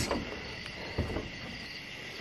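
A steady, high-pitched chorus of night insects singing, with a soft thump about a second in.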